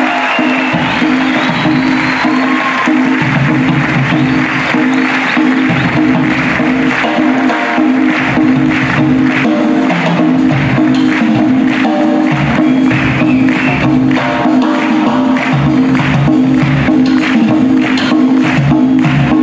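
Audience applause as a marimba and percussion piece ends, over sustained low notes. About halfway through, a steady percussion rhythm starts up.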